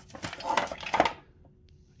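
Light clicks and clattering knocks from handling the plastic housing of a Mighty Mule gate opener arm, dying away about a second in.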